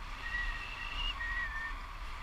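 Wind rushing over the camera microphone in paragliding flight, with a high whistling tone that wavers slightly for about a second and a half.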